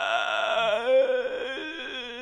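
A mournful, wordless voice wailing in long, wavering notes.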